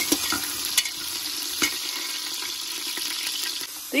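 Potato pieces sizzling steadily in hot oil in an aluminium pressure cooker, stirred with a metal slotted spatula that clicks and scrapes against the pot a few times.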